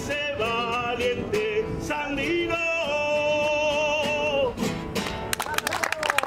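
A man singing a Latin American folk song to acoustic guitar, ending on a long held note. Hand clapping breaks out about five seconds in.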